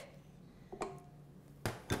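Quiet kitchen room sound with a faint tap about a second in and two sharper knocks near the end, as a glass dish and spatula are handled and set down on a stainless steel counter.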